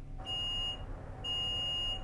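Water level meter's probe beeping as it touches the water in the well, signalling that it has reached the water table: a steady high-pitched electronic tone, heard twice, the second beep longer.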